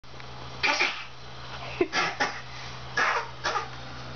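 A person coughing in several short bursts, close by.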